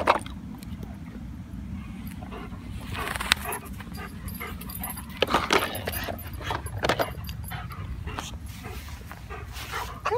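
A German shepherd mouthing and chewing a hard plastic baby toy: scattered sharp clicks and cracks of plastic over a steady low rumble.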